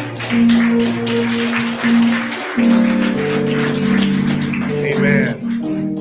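Electronic keyboard playing sustained chords over a light percussion beat, as church service music.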